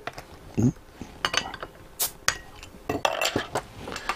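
Glass beer bottle being handled and opened: a series of sharp clinks and knocks of glass and metal cap.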